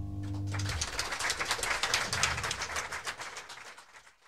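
A held final chord of jazz combo music dies away under a second in, and audience applause follows, fading out toward the end.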